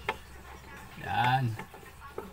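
A short untranscribed spoken utterance from a man about a second in, with a few faint clicks from handling the refrigerator's plastic lamp cover.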